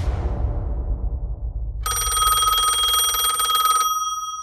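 A sudden deep boom at the start that dies away. Then, about two seconds in, a bell rings in a rapid trill for about two seconds, like an old telephone bell, and keeps ringing as it fades.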